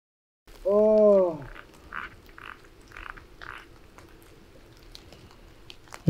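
A person retching: one loud heave starting about half a second in and lasting about a second, falling in pitch at its end, then four short faint gasps about half a second apart.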